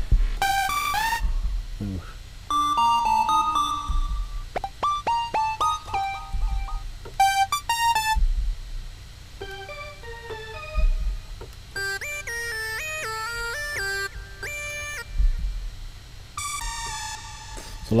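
Software synthesizer lead presets in Logic Pro X being auditioned: short melodic notes and chords are played on a keyboard, and the tone changes from one preset to the next. A quick run of stepping notes comes in the second half.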